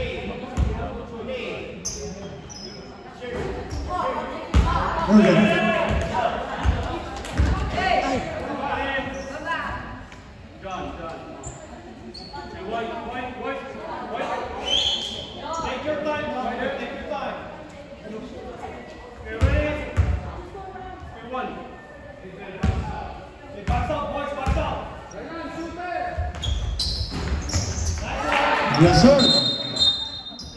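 Basketball bouncing now and then on a hardwood gym floor, heard amid voices talking and calling out, all echoing in a large gym.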